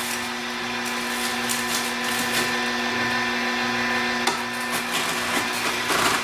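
Horizontal slow (masticating) juicer running with a steady motor hum, crushing greens, with occasional short crackles.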